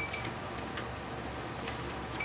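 Horizon treadmill running slowly, its motor and belt giving a steady low hum. A short electronic beep from the console sounds right at the start.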